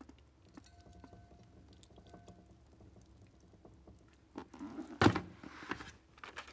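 A plastic bucket tipped to pour into a glass vase filled with clear deco beads: quiet at first with a few faint clicks, then a short, loud pour about five seconds in.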